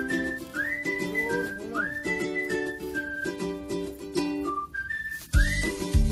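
Background music: a whistled tune with upward swoops between held notes over chord accompaniment, with a heavy low beat coming in near the end.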